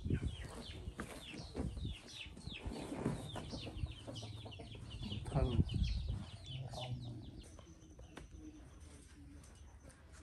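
Chickens clucking and chirping in a rapid run of short, falling calls that thin out after about seven seconds, with a brief low rumble about five and a half seconds in.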